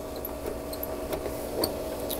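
Faint clicks and taps of fingers working at the plastic control-panel cover of a TropiCal pool heat pump, over a steady hum from the running pool equipment.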